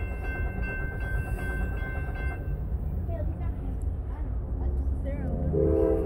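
Diesel locomotives of an approaching freight train rumbling steadily in the distance, with the locomotive horn starting to blow about five and a half seconds in.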